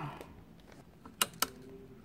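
Two sharp clicks about a quarter second apart, a little over a second in: a table lamp's switch being turned on.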